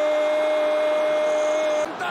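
A football commentator's drawn-out goal cry: one long "gol" held at a single steady pitch, which breaks off suddenly just before the end.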